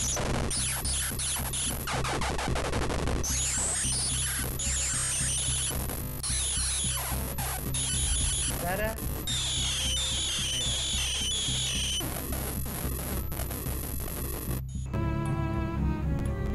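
Harsh, chaotic electronic noise played by malware running on a computer: fast pitch sweeps rising and falling over and over, crackling clicks and a steady low drone. Near the end it cuts off suddenly and a slower tonal melody of held notes takes over.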